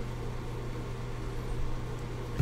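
Steady low hum with a faint even hiss: background room tone, with no distinct events.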